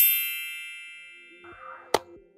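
A bright, bell-like chime sound effect, struck once and ringing away over about a second and a half, as a logo sting. A short sharp click comes near the end.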